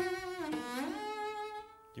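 Solo cello, bowed: a held note, then an audible slide up into a higher note, which is held and fades away about a second and a half in. The slide is the expressive shift (portamento) whose use is being questioned.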